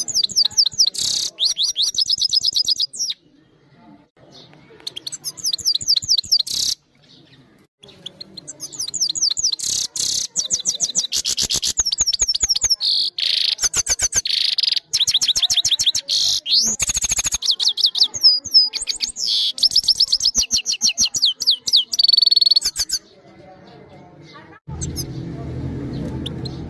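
Caged grey-headed goldfinch singing a fast, twittering song of rapid high notes. It sings two short phrases, then a long unbroken run of about fifteen seconds, with brief pauses between. A low steady hum comes in near the end, after the singing stops.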